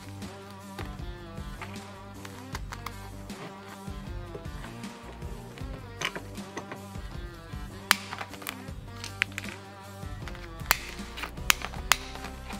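Background music with a steady beat, over several sharp clicks and snaps in the second half from a hand rivet gun squeezing a stainless blind rivet to fasten a lacing hook through the heat-shield sheet.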